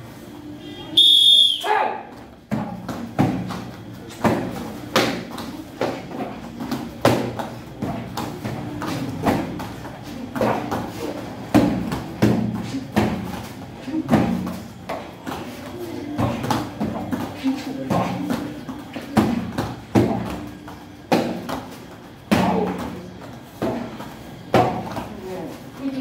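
Taekwondo kicks striking a kick shield and target paddle: a fast, steady run of sharp slaps, roughly one or two a second, with a short high-pitched tone about a second in.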